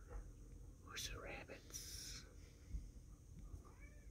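Quiet room with soft whispering: a few short whispered sounds, including a sharp hiss about two seconds in.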